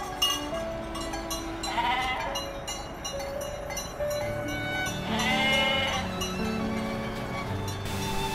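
Sheep bleating as a flock is driven along a paved street: a short bleat about two seconds in and a longer one around the fifth second, over background music.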